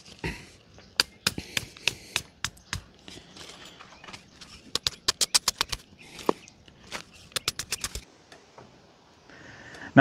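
A hammer tapping metal landscape staples into the ground through woven weed fabric. A few separate sharp taps come first, then two quick runs of rapid taps past the middle, and the taps stop suddenly near the end.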